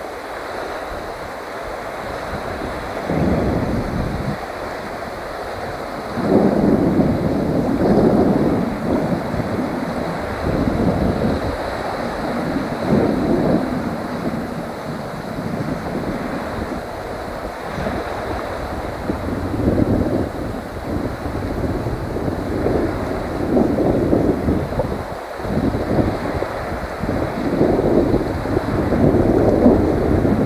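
Wind buffeting the microphone over small choppy waves lapping close by, in uneven gusts that grow louder about six seconds in.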